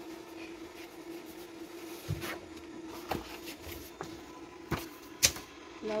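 A few sharp clicks and knocks as a freshly printed jersey is handled on an opened heat press, the loudest near the end, over a steady low hum.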